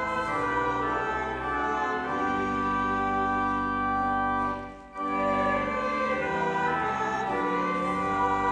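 Church organ playing a hymn in slow held chords, with a short break about five seconds in before the next chord.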